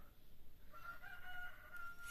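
A faint, distant bird call: one long, held note starting under a second in and lasting about a second and a half.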